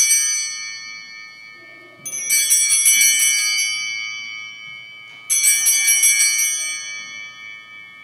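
Hand-held altar bells (Sanctus bells) rung at the elevation of the host: a ring already fading, then two more shaken rings about two and five seconds in, each bright and shimmering and dying away slowly.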